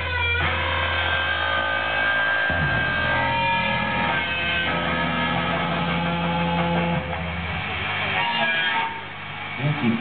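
Live rock band playing through a PA: electric guitars ringing over held low bass notes, dropping in level near the end.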